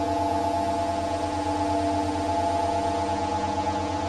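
Ambient electronic drone music: several sustained, unchanging synthesizer tones layered together, with a low hum that pulses rapidly and evenly beneath them.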